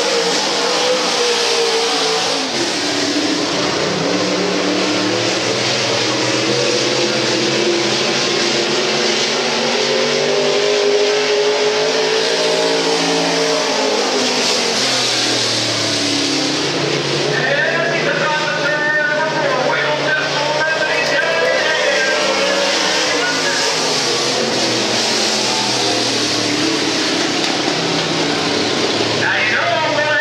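Dirt-track Pro Stock race car engines running around the oval, the engine note rising and falling slowly as the cars accelerate and lift, over a loud steady roar of noise. A voice talks briefly about two-thirds of the way in.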